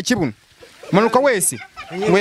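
A person's loud, wavering vocal calls without clear words: a short one at the start, then a longer run of rising-and-falling calls about a second in.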